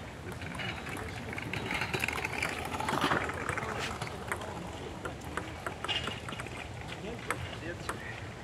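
Table tennis ball in a rally on an outdoor table: sharp clicks off the bats and the table, about one a second, over a steady background hum.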